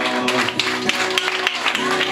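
Two acoustic guitars, one a twelve-string, strumming the closing chords of a song, the voices having just stopped.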